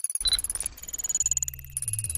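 Synthesized sci-fi computer sound effects: a rapid chatter of high electronic blips with a short beep near the start, and a low buzzing hum that steps up and down in pitch in the second half.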